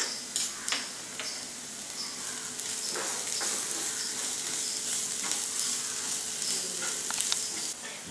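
Chopped onions and green chillies with spice powders sizzling in oil in a non-stick frying pan while a wooden spatula stirs them, with scattered scrapes and taps of the spatula on the pan. The sizzle stops suddenly near the end.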